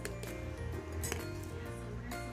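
A metal teaspoon clinking a few times against a ceramic coffee mug as the coffee is stirred, over background music with sustained tones.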